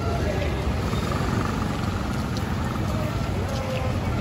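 Busy street ambience: crowd voices talking and the steady rumble of slow motor traffic, with three-wheelers and motorbikes among it.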